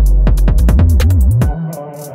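UK drill instrumental beat: deep sliding 808 bass notes gliding up and down under fast hi-hat clicks. About one and a half seconds in, the bass and drums cut out, leaving a quieter sustained synth chord.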